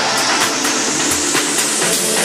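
Tech house DJ mix in a build-up: a rising noise sweep over steady ticking hi-hats, with the bass thinned out.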